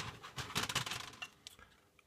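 Rapid, irregular small clicks and rattles of a plastic model railway goods wagon being picked up and handled, its wheels and couplers knocking, for about a second before it goes quiet.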